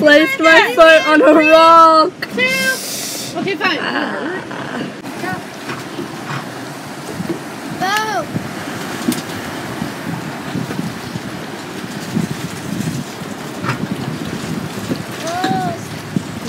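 Open-sea ambience heard from a boat: a steady wash of waves and wind, with people calling out across the water now and then, once about eight seconds in and again near the end. A loud voice fills the first two seconds.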